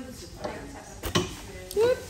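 Indistinct voices of people talking in the room, with one sharp knock just after a second in and a short rising vocal sound, the loudest thing, near the end.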